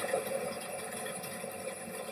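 Faint steady background hiss with no distinct sounds: room tone.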